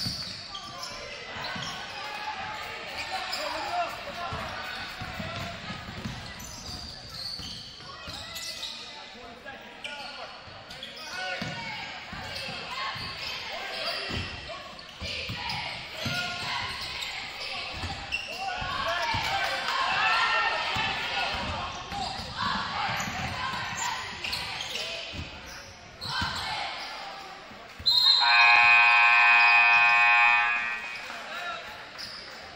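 Basketball dribbling and bouncing on a hardwood gym floor amid crowd chatter and shouts. Near the end the scoreboard horn sounds a steady blare for about two seconds as the game clock hits zero, ending the period.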